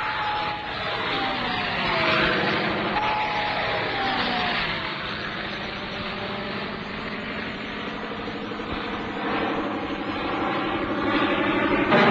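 Engine of a low-flying agricultural aircraft passing over. Its pitch falls twice as it goes by in the first few seconds, then it settles to a steady drone that grows loudest near the end.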